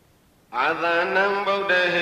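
A Buddhist monk's voice begins chanting about half a second in, holding long, steady notes that step up and down in pitch.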